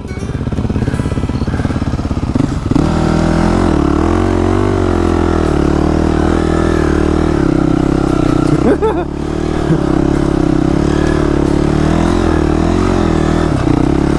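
Dirt bike engine running close up as the bike is ridden through soft sand. The revs step up a few seconds in and hold fairly steady, with one quick rev blip about two-thirds of the way through.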